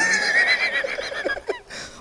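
A high-pitched, wavering vocal sound with a quick vibrato, held for about a second and a half and fading away, with a short click near the end.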